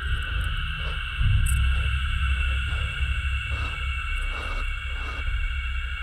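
Low rumbling drone with steady high-pitched tones held over it, swelling louder about a second in.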